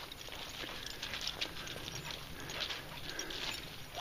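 Footsteps and dogs' paws on a wet, muddy track strewn with dead leaves: irregular soft steps.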